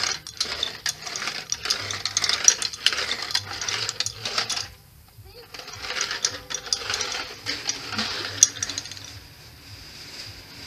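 Plastic pull-along toy rolled back and forth across paving by a toddler's hand, its wheels and inner mechanism making a fast clicking rattle. The rattle stops for about a second halfway through, then starts again and dies away near the end.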